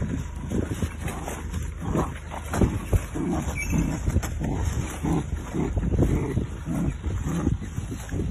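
An animal growling up close in short, irregular low bursts, with rough rustling and handling noise under it.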